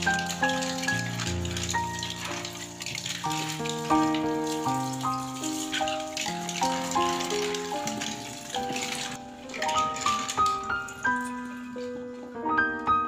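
Running tap water pouring over green mussels as they are rinsed by hand, with the shells clicking against each other, under background piano music. The water stops suddenly about three-quarters of the way through, leaving the piano alone.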